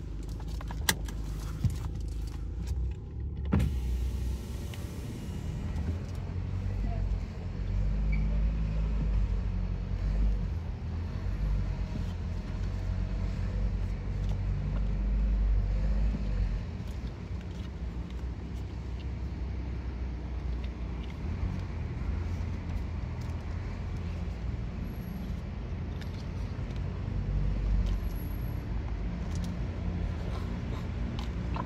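Car interior: the low, steady rumble of the engine and tyres as the car rolls slowly along, swelling and easing now and then, with a few sharp clicks about a second in.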